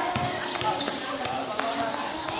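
A basketball bouncing a few times on an outdoor concrete court, under the voices of players calling out.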